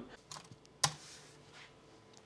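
Light clicks from handling the battery test equipment: a few faint ones, then one sharp click a little under a second in.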